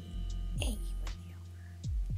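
A steady low electrical hum, with one short spoken word about half a second in.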